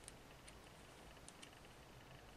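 Near silence with four faint clicks of knitting needles as stitches are worked, two of them close together after about a second.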